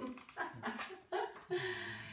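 Pug making a run of short pitched vocal sounds, about two or three a second.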